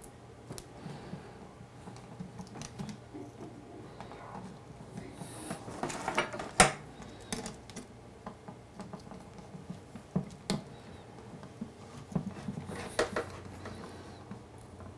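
Light metallic clicks and taps of a 9 mm combination wrench working a brass nozzle tight in a 3D printer's heater block, with a few sharper clicks spread through it.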